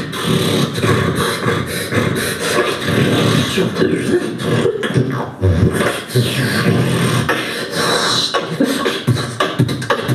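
Live beatboxing into a handheld microphone: a continuous run of mouth-made drum sounds, kicks, snares and clicks, with voiced tones mixed in, all made with the human voice and mouth.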